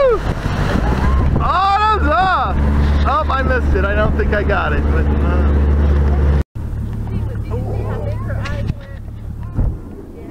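Motorboat engine running steadily under way, a low hum, with people's shouts over it in the first few seconds. After a sudden break about six and a half seconds in, the engine hums lower and quieter.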